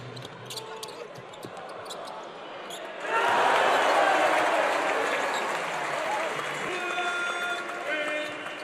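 Basketball game action in an arena: the ball bouncing on the court with short sharp clicks of play. About three seconds in, the crowd suddenly erupts into loud cheering that carries on.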